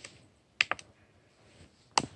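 A few sharp clicks or taps: three in quick succession a little over half a second in, and one more at the end.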